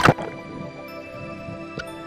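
Background music with steady tones, broken right at the start by a single sharp, loud crack of a speargun firing underwater, with a fainter click near the end.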